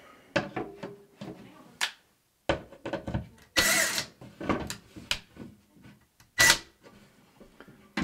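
Power drill driving a screw back into the wall in several short bursts, the longest about three and a half seconds in and a briefer one near six and a half seconds, each with a steady high whine.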